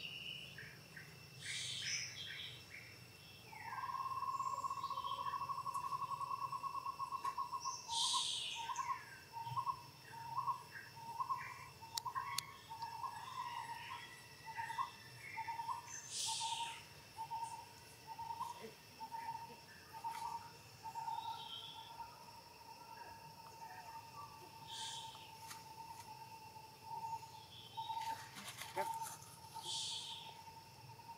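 Birds calling in short high chirps every few seconds over a steady high-pitched insect drone. A mid-pitched note holds for a few seconds, then repeats about twice a second for some fifteen seconds before settling back into a steady tone.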